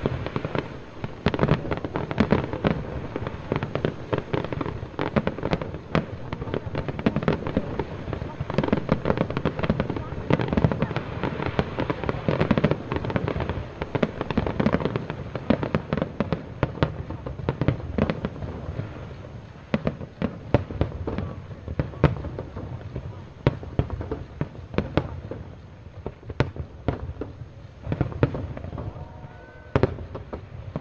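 Fireworks display: a continuous barrage of bangs and crackles from aerial shells bursting. It is dense and loud through most of the stretch and grows sparser and quieter in the last third.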